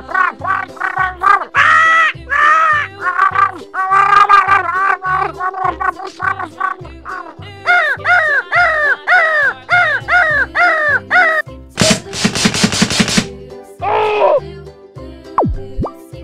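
High-pitched cartoon gibberish chatter, a rapid string of short squeaky syllables standing in for angry cursing, over a music track. About three-quarters of the way through, a fast rattle of sharp clicks lasts about a second, followed by a short falling squeal.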